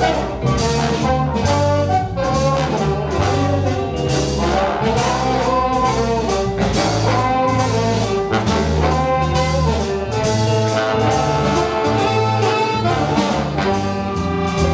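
A jazz big band playing live, the brass section with trombones and trumpets leading the ensemble over bass and drums.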